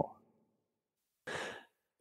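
A person's single short, breathy in-breath about a second and a quarter in, in an otherwise near-silent gap.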